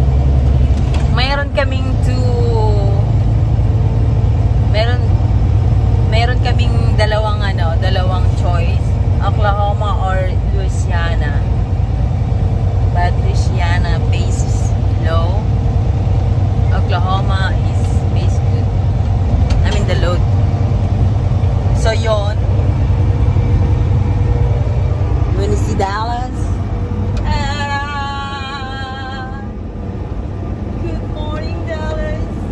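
Steady low engine and road rumble inside a moving semi-truck's cab, with a woman talking over it.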